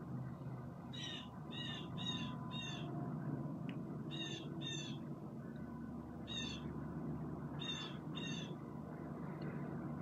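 A bird calling in short, harsh repeated calls, nine in all, in groups of four, two, one and two, over a low steady background hum.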